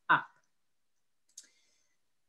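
A single short, sharp click about one and a half seconds in, the click that advances a presentation slide on a computer; otherwise silence.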